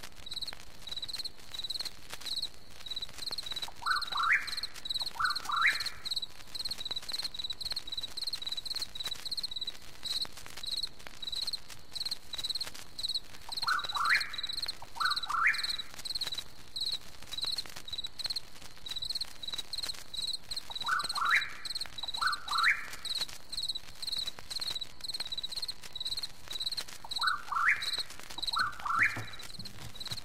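Night-time chorus of insects and frogs: a high insect chirp pulsing steadily about twice a second, and every six or seven seconds a pair of short rising calls.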